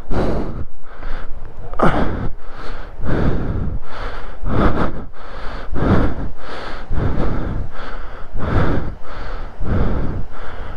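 A person breathing hard close to the microphone, in quick, even breaths, from the effort of climbing over rock.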